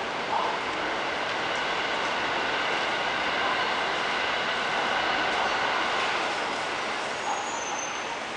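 Steady indoor background noise: an even hiss with faint steady whining tones, a little louder through the middle.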